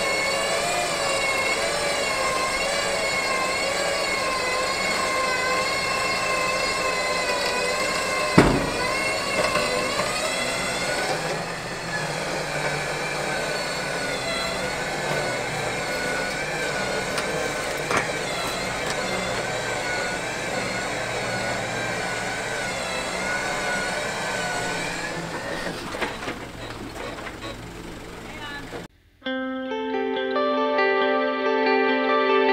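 Electric winch motor whining under load as it pulls a Smart car slowly up aluminium ramps onto a truck bed, its pitch wavering as the load changes. There are two sharp knocks along the way, and the whine cuts off suddenly just before the end.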